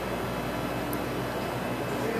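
Steady room hum and hiss, with a faint short click about a second in.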